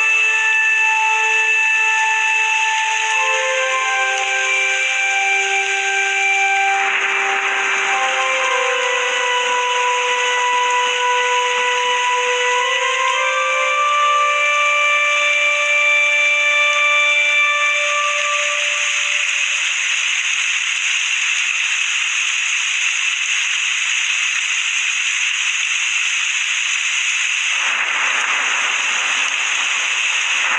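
Background music of slow, held notes changing pitch one after another, which gives way about halfway through to a steady hiss like static.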